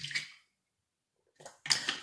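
A short slurp as water is sucked through the spout of a plastic misting water bottle, at the very start, then a breath near the end. The water is coming out slowly.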